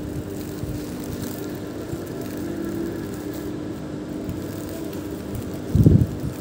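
A steady low mechanical hum, like an engine or motor running, holding several even tones throughout. A short, loud, low thump comes just before the end.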